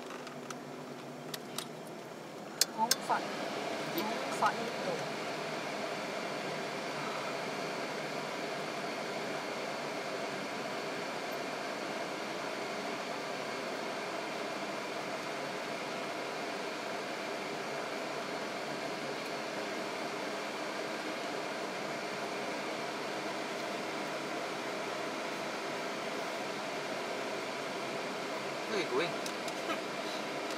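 Steady hum in a moving car's cabin from the engine and air-conditioning fan. It steps up and then holds even about three seconds in, after a few sharp clicks.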